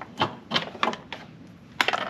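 A handful of irregular sharp clicks and light knocks as a sonar cable and its connector are handled and pulled through the opening in a bass boat's bow cover plate.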